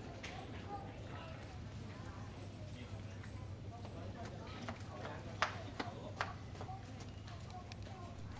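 Indistinct background voices over a steady low hum, with a few sharp clicks or taps around the middle.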